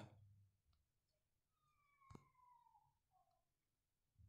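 Near silence, with one faint click about two seconds in and a faint, brief falling whistle-like tone around it.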